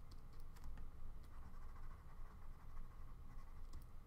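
Faint taps and light scratching of a stylus on a tablet screen as words are handwritten, with a few scattered small clicks over a low steady hum.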